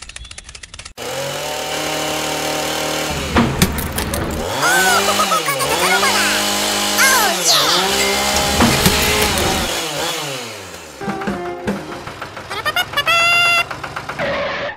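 Small chainsaw running steadily, then revving up and down several times as it cuts through a tree.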